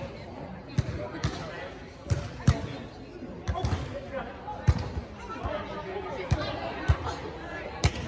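Volleyball being struck by players' hands and forearms during a beach volleyball rally: a run of sharp slaps, about one a second, with players' voices calling out underneath.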